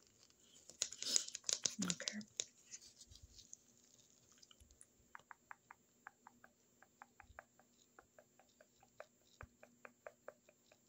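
A soft whispered "okay", then from about five seconds in a run of small, sharp, close-miked clicks, a few a second and irregular. These are the sounds of a pretend plaque scraping in an ASMR dental roleplay.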